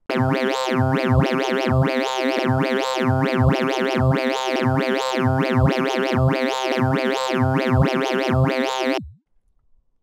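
A sustained sawtooth synth note played through a low-pass digital filter whose cutoff is swept by an LFO in custom mode. The result is a quick run of 'wah' sweeps, about three a second and of uneven height, following a fixed pseudo-random sequence that the reset makes repeat each time the song plays. The note cuts off suddenly near the end.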